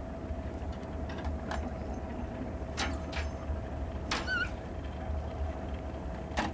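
Ship's deck ambience: a steady low rumble with a faint steady hum, a few light knocks, and a short wavering high tone just after four seconds in.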